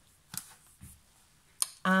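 A few light clicks and taps from a plastic stamp-set case being handled on a desk, ending with a long drawn-out spoken 'uh' near the end.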